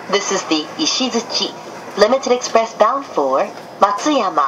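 Speech: a spoken train announcement in Japanese.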